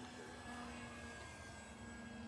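Faint, steady drone of an electric E-flite Cub RC model airplane's motor and propeller in flight.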